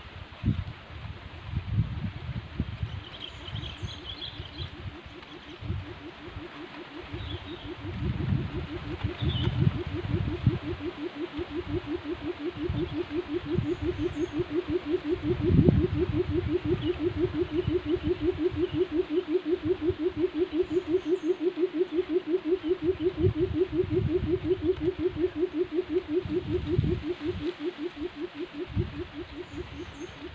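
A decoy buttonquail calling: a long series of low, rapid hooting pulses, about five a second, that builds up, peaks about halfway through and fades near the end. Low rumbles run underneath, with a few faint high chirps in the first seconds.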